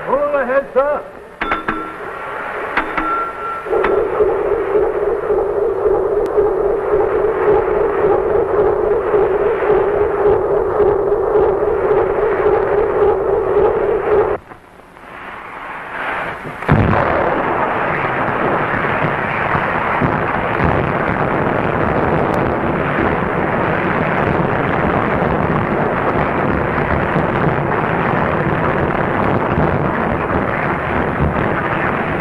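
Film sound effect of a ship striking an iceberg: a sudden crash about seventeen seconds in, then a long, even grinding rush of noise as the ice scrapes along the hull. Before it, a steady hum with a held tone, which drops away a couple of seconds before the crash.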